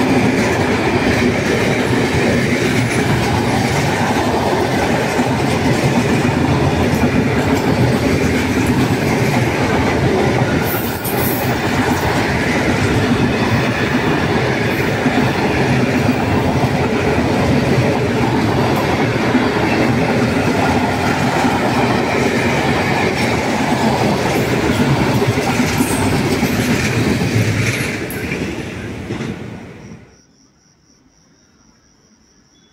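Intermodal freight train's container and tank-container wagons passing at speed close by, a steady loud rush with wheels clattering over the rail joints. The noise fades away in the last couple of seconds as the end of the train goes by.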